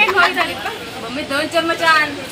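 Several people talking at once: overlapping chatter of voices, including a higher-pitched voice near the end.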